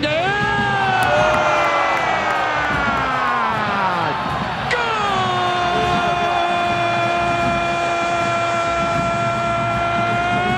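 A football TV commentator's long goal scream, "gol". The first drawn-out cry slides down in pitch over about four seconds. After a short break, a second note is held steady for about six seconds.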